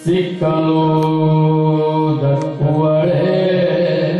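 Male voice singing a Yakshagana song in long held notes that glide from one pitch to the next, with one sharp strike about two and a half seconds in.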